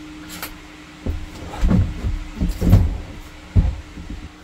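An empty plastic fresh-water tank being lifted out of its compartment, knocking and scraping against the opening: about five dull, irregular thumps starting about a second in.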